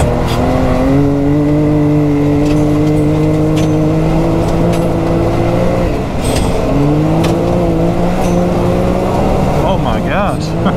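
Can-Am Maverick X3 Turbo RR's turbocharged three-cylinder engine pulling the side-by-side along a dirt track, its pitch climbing slowly, dipping briefly about six seconds in, then climbing again. Occasional sharp ticks over the engine.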